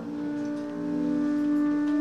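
Live improvised jazz: a new note with a bowed upright bass in the sound begins at the start and is held long and steady in pitch.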